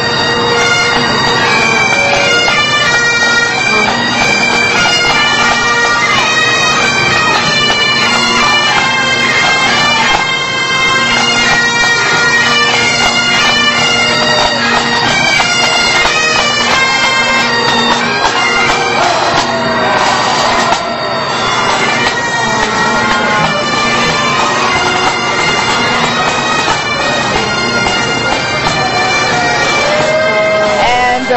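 Pipe band bagpipes playing a tune over their steady, unbroken drones.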